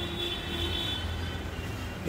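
Steady low rumble of a lit gas stove burner under a steel kadhai of dal palak simmering, with a faint thin high tone over it.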